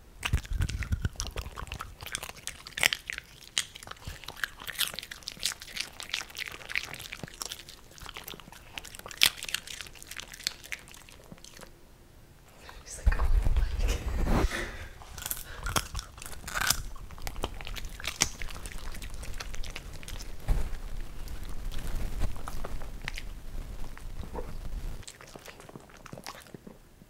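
Italian greyhounds crunching and chewing popcorn close to the microphone, a dense run of sharp crackling bites. There is a brief lull a little before halfway, then a louder stretch with low thuds.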